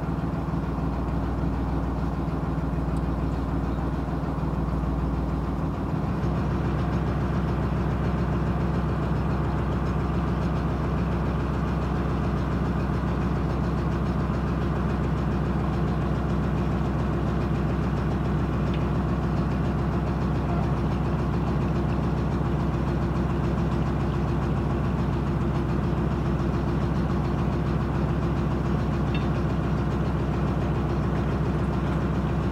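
Narrowboat's diesel engine idling steadily, with a regular low knock that becomes clearer about six seconds in.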